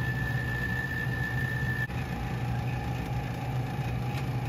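Steady low hum of an electric motor running, with a thin high whine that drops to a lower steady pitch about two seconds in.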